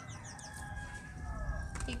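Birds calling in the background: quick high chirps in the first half second and a long drawn-out call held for over a second that slides down in pitch near its end.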